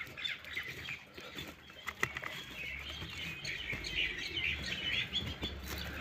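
Small birds chirping repeatedly in the background, with light rustling and a few sharp crinkles as hands dig through chopped maize silage in a plastic-wrapped bale.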